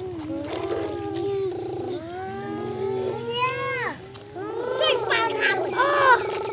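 A child's voice making long, wordless sounds that glide up and down in pitch.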